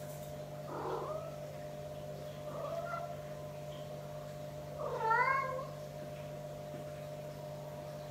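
A domestic cat meowing three times, short calls with the third, about five seconds in, the loudest and clearest. A steady low hum runs underneath.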